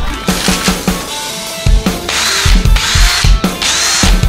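A cordless drill is triggered in three short bursts of about half a second each in the second half, its motor whine rising and falling each time. Rock music with a steady beat plays throughout.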